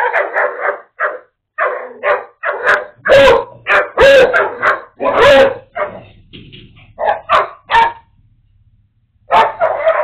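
A dog barking over and over in quick short barks, going quiet for about a second near the end and then barking again.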